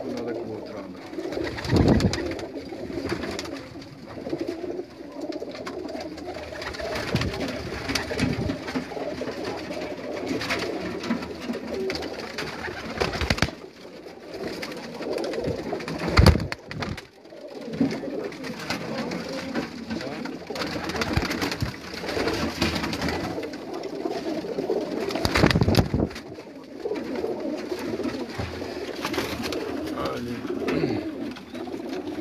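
Many domestic pigeons cooing together without a break, a dense overlapping murmur of low calls. A few short thumps cut through it, the loudest about sixteen seconds in.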